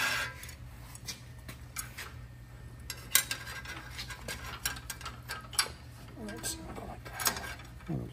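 Quarter-inch steel rods being slid and handled in a steel bending jig. Scattered light metal clicks and scrapes come as the rods knock against each other and the bender's frame while they are lined up against the bending dog.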